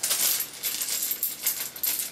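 Small wooden buttons clicking and rattling against each other as they are taken out of their packet.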